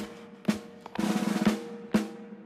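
A drum playing a march-style cadence: single strokes about half a second apart, with a short roll about a second in.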